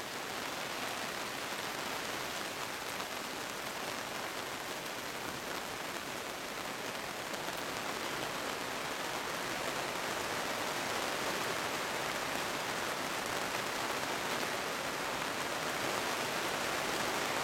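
Steady rain falling: a continuous, even hiss of rainfall.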